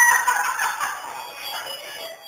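A man's high, strained cry, continuing from just before and tailing off within the first half second, then fading under faint background music.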